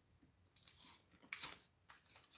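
Faint chewing of a chocolate bar studded with popping candy: a few soft clicks and crackles about halfway through and again near the end, otherwise near silence. The popping candy is barely going off yet.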